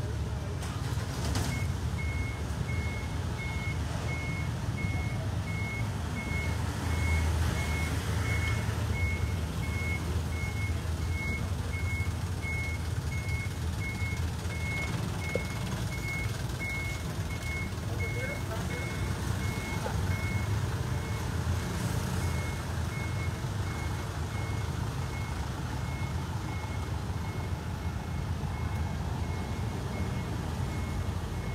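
A vehicle's reversing alarm beeping steadily, about two short high beeps a second, with a brief pause about two-thirds of the way through, over a steady low engine rumble.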